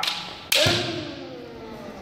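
A single sharp crack of a bamboo shinai striking kendo armour about half a second in, ringing on in the reverberant gym hall.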